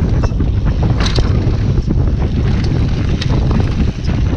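Wind buffeting the microphone of a camera on a mountain bike riding fast down a dirt trail, a heavy low rumble throughout, with sharp clicks and rattles from the bike over bumps, the loudest about a second in.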